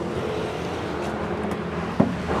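Steady low machine hum over outdoor background noise, with no sudden sounds.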